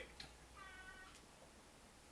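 Near silence with one faint, short, high-pitched cry about half a second in, lasting about half a second.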